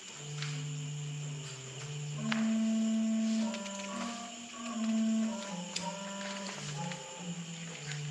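Organ playing slow, quiet held chords, the notes changing about once a second, heard through a video call's compressed audio.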